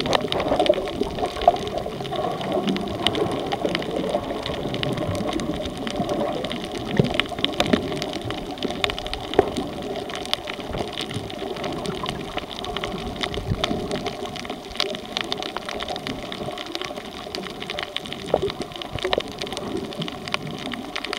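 Underwater sound picked up by a snorkeler's camera: a steady rush of water with many scattered sharp clicks and crackles.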